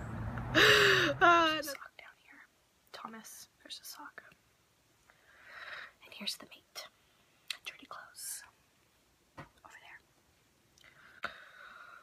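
A woman laughs loudly for about a second at the start. It breaks off suddenly, and for the rest of the time there is only soft whispering with long pauses.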